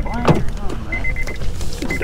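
Car's door-open warning chime beeping rapidly in a thin, high tone, broken into short repeated beeps, while the door stands open.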